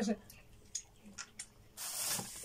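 A few faint ticks, then near the end a sudden loud crinkling rustle of a plastic sweets wrapper being picked up and handled.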